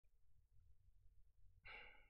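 Near silence, then a short, faint breath near the end.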